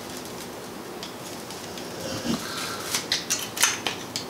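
Handling sounds as the splintered broken ends of a wooden broom handle are pressed and fitted together by hand on a steel workbench. Near the end comes a quick run of sharp little clicks and cracks.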